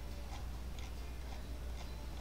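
Quiet room tone: a steady low hum with a few faint, scattered ticks.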